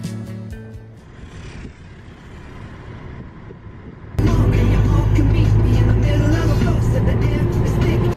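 Guitar music fades out, leaving a quieter stretch of low background noise. About four seconds in, a song cuts in loudly, played on a taxi's car radio over the car's engine and road noise, and it stops suddenly at the end.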